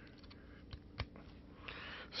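Faint handling clicks as a headphone plug is fitted into the kit's headphone jack, with one sharp click about a second in.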